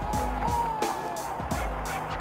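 Music with a steady drum beat, about three hits a second, over deep bass, with faint sliding high tones above it.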